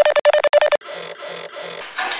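Electronic music built from machine-like sounds: a rapid train of sharp clicks over a steady mid-pitched tone that cuts off just under a second in, then a hazy texture with three low pulses about a third of a second apart.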